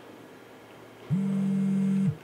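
A steady low tone switches on sharply about a second in and holds flat for about a second before cutting off. It is one link in an on-off pattern that repeats.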